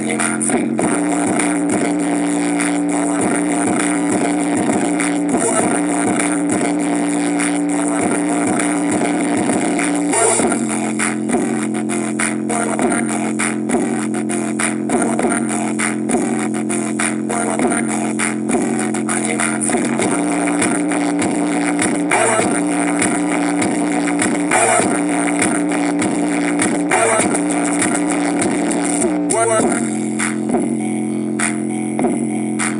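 A knock-off JBL Boombox Bluetooth speaker playing a song at maximum volume in mono mode, with a strong sustained bass line and a steady beat, recorded close up.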